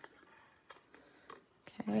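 Small, sharp paper snips cutting cardstock: a few faint, short snips spread across the two seconds.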